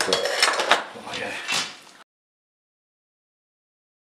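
Small metal hand tools clicking and scraping on the end of a copper refrigerant pipe as it is prepared for flaring. The sound cuts off abruptly about two seconds in.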